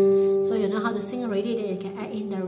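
A chord held on a digital piano, its notes ringing steadily. About half a second in, a woman's voice starts over the held chord.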